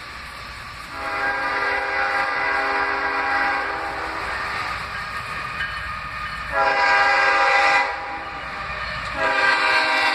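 CSX freight locomotive's air horn sounding the grade-crossing signal: a long blast starting about a second in, a short louder blast near the middle, and another long blast beginning near the end, over the rumble of the approaching train.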